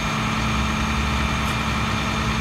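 Flatbed tow truck's engine idling steadily: an even low rumble with a constant thin whine over it.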